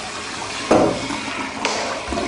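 Water rushing and splashing in a film soundtrack, swelling sharply about two-thirds of a second in and again near the end.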